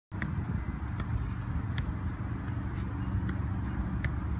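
A football on a tether cord being struck by foot: several sharp taps, roughly one a second, over a steady low rumble.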